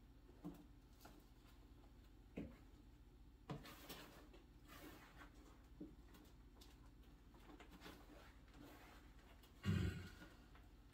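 Quiet hand work: soft rustles and small knocks as potting mix is pressed into a white RootTrapper grow bag, with one louder, short thump near the end.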